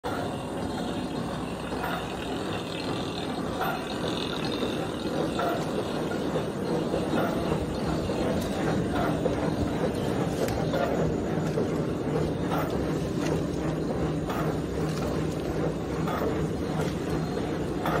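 Non-woven dental bib making and folding machine running: a steady mechanical hum with a continuous clatter of many light clicks from its rollers and cutting and folding mechanism.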